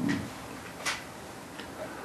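Quiet room tone of a hall with a short, sharp click about a second in and a fainter tick a little later.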